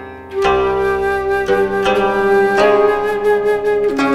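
Japanese-style background music: a woodwind melody comes in about half a second in and holds long notes over plucked-string accompaniment.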